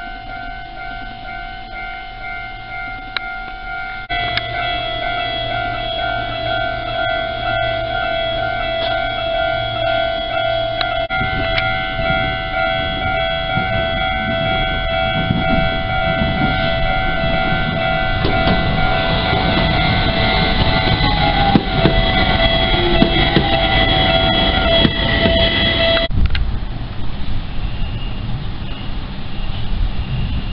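Japanese level-crossing warning bells ringing steadily, with a second bell joining about four seconds in. A Fukui Railway train rumbles closer and past from about eleven seconds on. The bells cut off suddenly a few seconds before the end, as the crossing clears.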